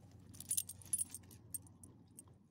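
Metal tags on a dog's collar jingling in a quick flurry as the dog shakes its head, with a few lighter jingles after.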